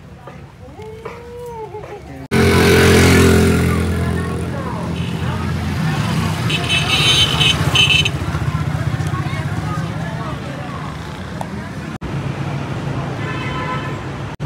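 Road traffic, with motorcycles and cars running past, starting suddenly about two seconds in after a quieter opening. A vehicle horn sounds for about a second and a half midway, and a shorter horn comes near the end.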